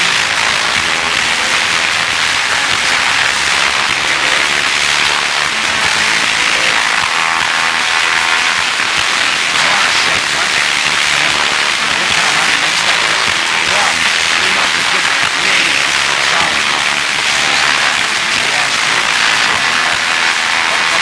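Audio of an old analog TV broadcast, taken up by a steady, even hiss, with faint music and voices under it.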